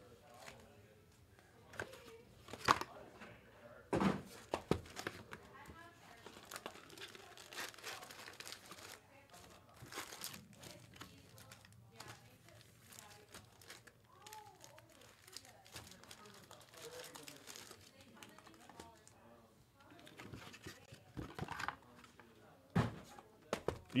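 Foil trading-card pack wrappers crinkling and tearing as packs are opened, with scattered faint rustles and light taps as the packs and cards are handled. The loudest rustles come a few seconds in.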